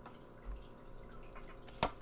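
A tarot card being laid down on a wooden tabletop: a soft low bump about half a second in and a single sharp click near the end, over quiet room tone.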